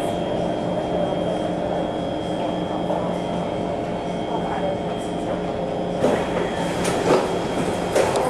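Kawasaki C151 metro train with Mitsubishi Electric GTO chopper control, heard from inside the car while running: a steady rumble carrying a constant high tone. A few sharp clacks come in the last two seconds.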